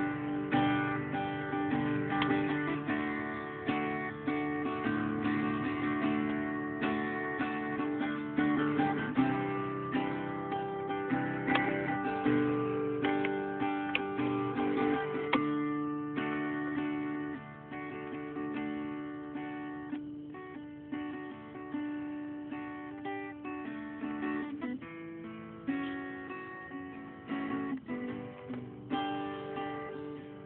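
Acoustic guitar playing: a run of plucked notes and strummed chords, a little softer in the second half.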